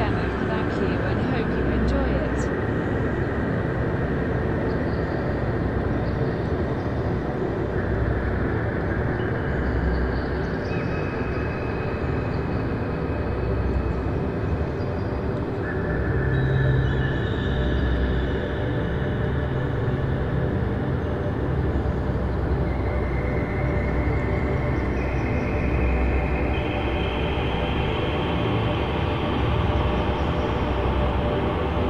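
Dark ambient drone music: a dense, rumbling noise bed over which steady high tones enter one after another and layer up.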